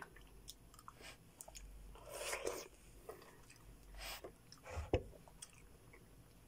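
Mouth sounds of chewing and biting into juicy slices of melon: small wet clicks, a louder bite about two seconds in, and a short sharp thump near the end.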